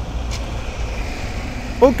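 Street traffic: a steady low engine rumble from vehicles passing on the road, with a man's voice starting near the end.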